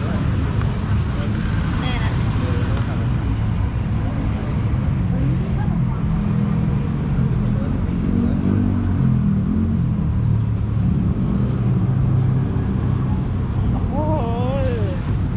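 Steady low rumble of road traffic, with faint voices in the background.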